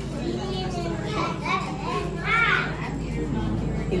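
Young children's voices chattering and calling out, with a couple of high rising-and-falling calls around the middle, over a steady low hum.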